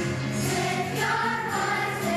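Children's choir singing with musical accompaniment; the voices swell about half a second in.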